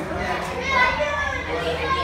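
A classroom of children chattering and talking over one another, several young voices at once with no single speaker standing out.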